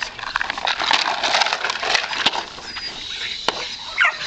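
Scuffling and rustling as a 12-week-old Malinois puppy tugs on a burlap rag, with many short clicks; it eases off about three seconds in.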